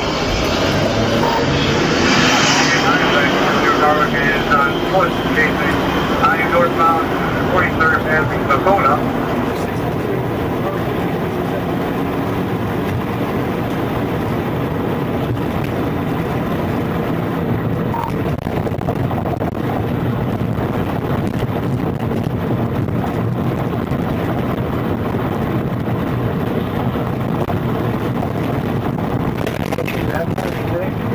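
Indistinct voices over steady vehicle noise for about the first nine seconds, then the even, steady engine and road noise of a police car driving, heard from inside the cabin.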